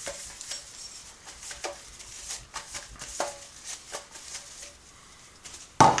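Fingers rubbing oil around the inside of a metal loaf pan, giving faint scattered taps and scrapes, then a louder clunk near the end as the pan is set down on the countertop.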